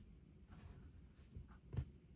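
Soft rustling of crocheted yarn shawls being handled and shifted on a wooden tabletop, with two light taps in the second half, the louder one just before the end.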